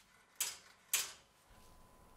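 Two sharp mechanical clacks about half a second apart from the vibraphone damper lever and its freshly welded link being worked. Each dies away quickly.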